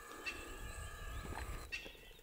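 Faint birds calling in the distance over quiet outdoor background noise with a low rumble.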